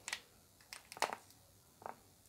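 Small plastic clicks and taps from handling true-wireless earbuds and their plastic charging case, a few sharp clicks scattered over two seconds.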